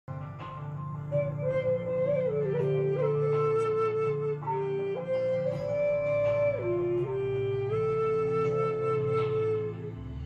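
Native American 'Dragonfly' flute playing a slow melody of long held notes that step and slide between pitches, over a low steady hum.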